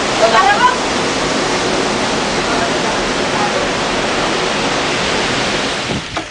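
Steady rush of flowing water, loud and continuous, with a few voices briefly in the first second.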